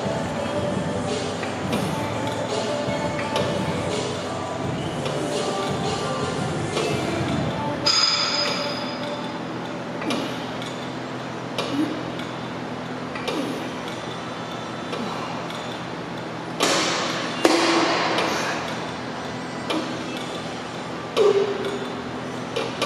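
Weight stack of a pec-fly machine clinking and clanking, metal plates knocking and briefly ringing as the chest flyes are worked, more often and louder in the second half. Music plays underneath.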